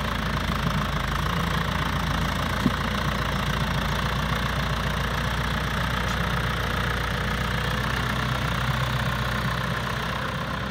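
Tractor diesel engine running steadily at low speed while one tractor tows another, with a single short click a little under three seconds in.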